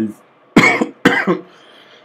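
A man coughing twice in quick succession, about half a second apart, starting about half a second in.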